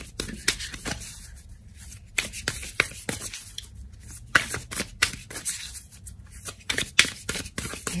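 A deck of tarot cards being shuffled by hand: a run of irregular soft card flicks and slaps, sparser at first and coming thicker about halfway through.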